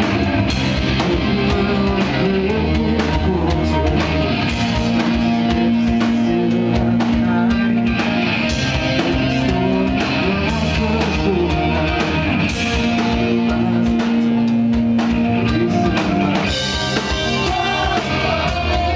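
Rock band playing live, loud and steady: drum kit, electric guitar and bass guitar.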